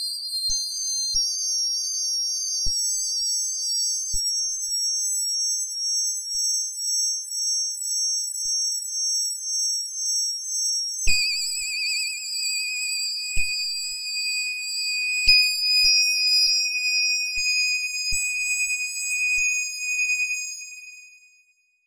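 Dungeon-synth music: high, wavering synthesizer tones held as long notes, dropping to a lower note about eleven seconds in, with scattered soft clicks.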